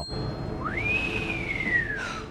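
A man whistling at a blade as if admiring it: one whistle that sweeps up quickly, then slowly glides down in pitch. It is heard over a low rumble in the film soundtrack.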